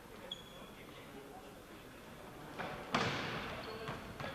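A hard impact of a futsal ball about three seconds in, a sharp thud that rings on in a large echoing sports hall. Before it there is faint hall ambience, with a short high squeak near the start.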